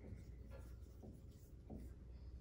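Dry-erase marker writing on a whiteboard: a few faint short strokes.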